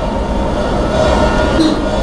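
Steady low rumbling noise.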